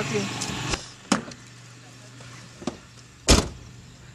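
A few sharp clicks as a car door is opened, then the door is shut with one loud thump a little past three seconds in.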